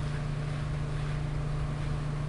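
A steady low hum under an even hiss, with no change or distinct event.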